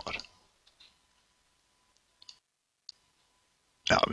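Near silence with a faint steady hum, broken by two small clicks about two and a quarter and three seconds in.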